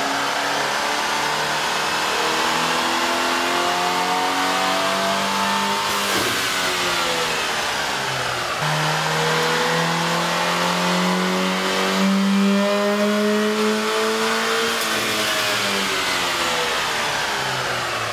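Chevrolet Equinox 2.4-litre four-cylinder engine pulling under load on a chassis dyno, in two runs. Its revs climb steadily for about six seconds and ease back down, first with the stock intake. Then, after a short break, they climb again with a K&N cold air intake fitted and fall away near the end.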